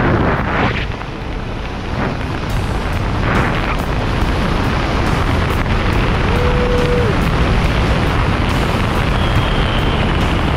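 Steady rush of wind across the camera microphone as a tandem parachute canopy spirals through banked turns. A short steady tone sounds once, about six and a half seconds in.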